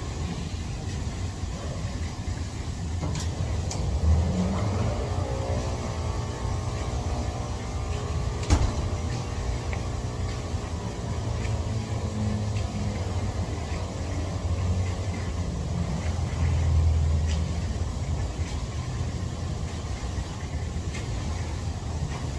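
Whirlpool jets of a jacuzzi running: a steady low rumble of churning, bubbling water, swelling briefly twice, with one sharp click about eight and a half seconds in.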